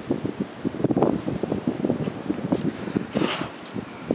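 Wind buffeting a camera's microphone: an uneven low rumble with rapid irregular thumps, easing near the end.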